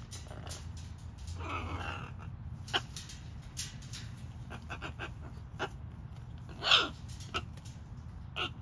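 Blue-and-gold and red macaws making low, raspy growling sounds: a drawn-out one about a second and a half in and a louder, short one near the end. Sharp clicks and taps are scattered between the calls.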